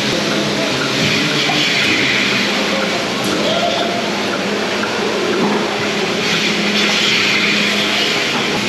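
Steady machinery din in a large milking parlour, a constant hum under an even rush of noise from the milking equipment and ventilation fans, with faint voices in the background.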